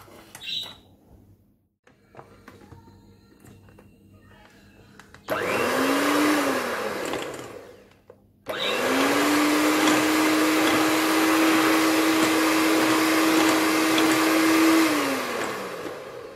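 Kenwood electric hand mixer creaming butter and icing sugar in a glass bowl: a short run about five seconds in that spins up and winds down, then after a brief stop it runs steadily for about six seconds and winds down near the end.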